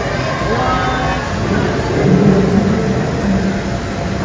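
A steady low rumble of background noise with indistinct voices through it.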